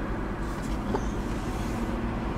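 Steady low rumble of a motor vehicle's engine and road noise.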